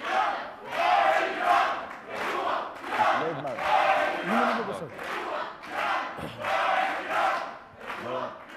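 A studio audience chanting in rhythm, with a massed shout about every three-quarters of a second.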